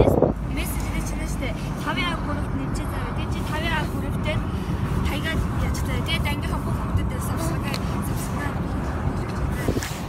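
Steady low rumble of road and engine noise inside a car's cabin.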